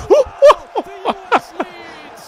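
A man laughing in short chuckles, about five quick bursts over two seconds.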